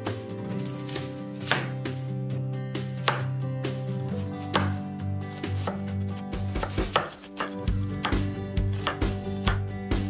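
Chef's knife chopping on a bamboo cutting board, with repeated sharp strikes at an uneven pace, first mincing carrot and later cutting through an onion. Background music plays quietly underneath.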